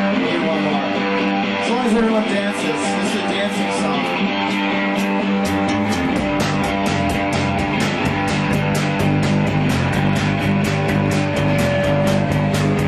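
Rock band playing live: the song opens on electric guitar, and bass and drums come in about halfway through, with steady cymbal strokes.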